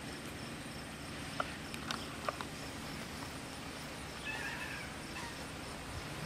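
A short animal call lasting about a second, starting about four seconds in, over steady outdoor background noise, with a few faint clicks a little earlier.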